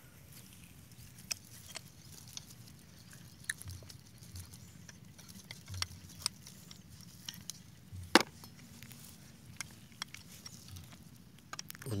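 Sporadic small metallic clicks and taps of hand tools on the gearbox casing of a Quick G1000 hand tractor, being dismantled to replace a broken drive chain, with one sharper knock about eight seconds in.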